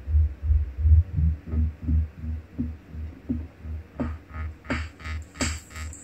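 Live electronic dance music from hardware grooveboxes (Roland TR-8 drum machine and TB-3 bass synth, run through a Korg Kaoss Pad): a steady deep kick-and-bass pulse about three beats a second, with short falling bass blips. About four seconds in, bright hissy hi-hat-like hits join the groove.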